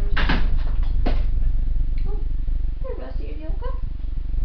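Two short knocks about a second apart, like small objects being handled and set down, over a steady low hum. A few quiet murmured words follow near the end.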